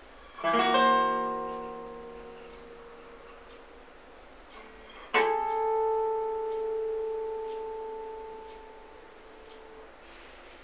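Classical guitar played solo: a quickly rolled chord about half a second in, left to ring and fade, then a second, louder chord about five seconds in that rings on and dies away slowly.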